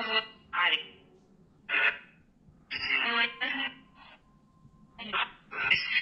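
Spirit box app on a smartphone sweeping through audio, giving a run of short choppy bursts of garbled, voice-like radio sound through the phone's small speaker, each cut off within a second, with a faint steady tone in some of the gaps.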